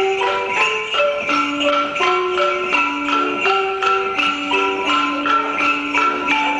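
Piano playing a lively tune with a steady beat, a chain of clear single notes over repeated chords.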